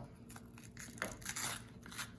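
Chef's knife cutting around the core of a green bell pepper on a wooden cutting board: a few faint, short crunches as the blade goes through the crisp flesh.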